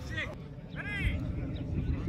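Two short shouted calls from players on a sideline, one just after the start and one about a second in, over a steady low rumble.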